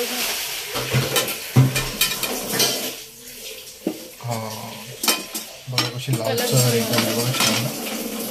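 A metal spoon stirring in a cooking pot, clinking and scraping against it in irregular strokes over a frying sizzle.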